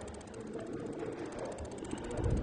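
Low background noise picked up by an open desk microphone, with faint scattered thumps and rustling and no clear speech.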